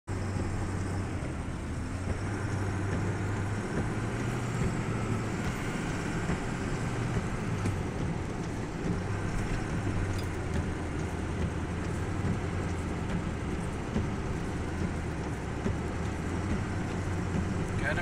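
Steady car cabin noise while driving on a snow-covered highway: engine and road noise with a continuous low hum.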